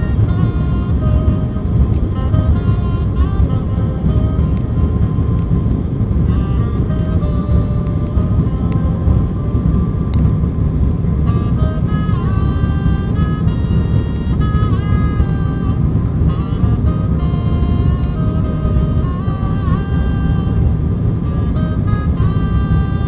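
Steady, loud low drone of an ATR 72-500 turboprop cabin during the descent, with a music melody playing over it.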